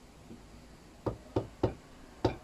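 A bench chisel's handle struck with a mallet, chopping into wood held in a vise: three sharp knocks about a quarter second apart, starting about a second in.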